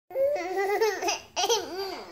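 A toddler laughing in two high-pitched bursts, with a short break before the second, whose pitch rises and falls in a few quick arcs.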